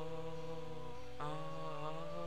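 A singing voice holding long, drawn-out notes, moving to a new note about a second in, over a steady musical backing.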